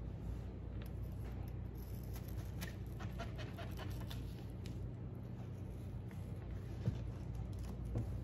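Chef's knife cutting through a sweet onion and knocking lightly and irregularly on a plastic cutting board, over a steady low hum.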